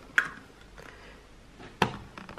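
Small cardboard box being opened by hand: a brief scrape of the flaps just after it starts, then a sharp tap near the end.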